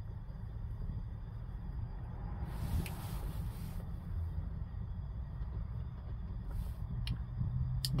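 Steady low rumble, with a breathy hiss lasting about a second around three seconds in, from a man puffing on a corncob pipe. A fainter breath follows later, and a few small clicks come near the end.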